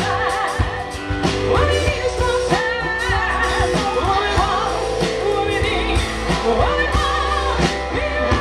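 Live rock band amplified through a PA: a woman singing lead over acoustic and electric guitars, bass guitar and a steady drum beat.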